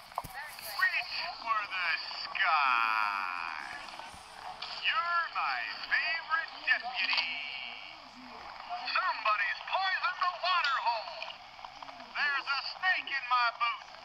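Woody doll's press-button voice box playing a run of recorded cowboy phrases in separate bursts, with a wavering, sliding sound about two seconds in. It comes through the toy's tiny speaker, thin and tinny with no bass.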